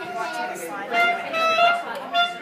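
A wind instrument holding long notes, changing pitch a few times, with voices chattering underneath.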